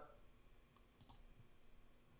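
Near silence with a few faint computer mouse clicks, two close together about a second in and a fainter one shortly after.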